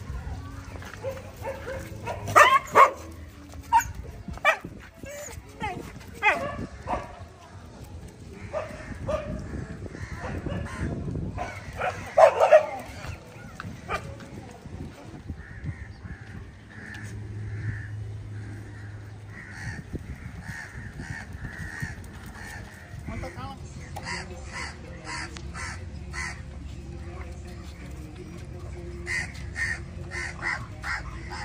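A pack of street dogs barking and yelping in short outbursts while being fed, loudest about two seconds in and again about twelve seconds in, with crows cawing in the background.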